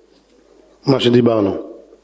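Only speech: a man's amplified voice says one drawn-out word after a short pause.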